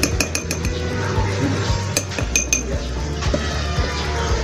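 A stainless steel tablespoon clinking against a drinking glass while scooping out granular potassium chloride fertilizer: a run of short, ringing clinks near the start and another about two seconds in.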